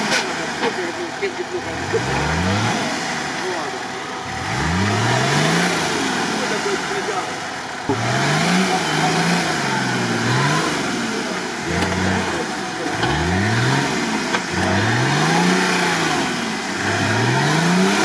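Stock UAZ-469 off-roader's engine revved up and eased off over and over, about eight rising surges, as it works through deep mud in a struggle for traction.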